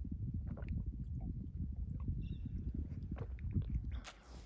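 Wind buffeting the microphone: a steady, gusty low rumble.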